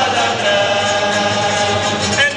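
Cape Malay male choir singing a comic song, the voices holding steady sustained chords with a lead voice over the chorus.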